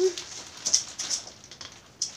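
Faint, brief rustles and ticks of a clothing package being handled, a couple of them about a second in, after a voice trails off at the very start.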